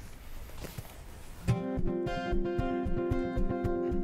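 Steel-string acoustic guitar strumming the introduction of a song. It starts about a second and a half in after a short quiet pause, then keeps a steady rhythm of chords.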